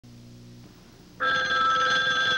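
A telephone ringing: one loud, steady ring beginning just past a second in, after a faint low hum at the very start.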